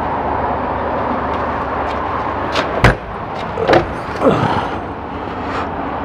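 A storage cabinet door inside a motorhome being handled over a steady rushing background: one sharp knock almost three seconds in, then a couple of softer clunks.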